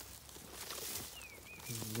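Tall oat stalks rustling and crackling underfoot as someone walks through them, with faint bird chirps falling in pitch about a second in. A man's voice begins near the end.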